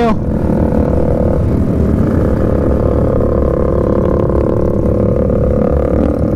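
Yamaha R15 V3's single-cylinder engine running steadily at a low cruising speed, heard from the rider's seat, with other motorcycles of a group ride around it and wind and road noise beneath.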